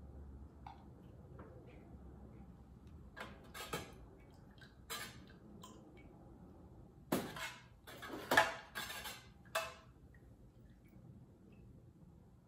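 Long metal spoon stirring melted soy wax in a metal pouring pitcher, knocking and scraping against its sides: a few scattered clinks, then a busier run of clinks from about seven to ten seconds in.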